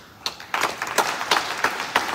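Audience applauding, starting about half a second in: a dense patter of many hands clapping.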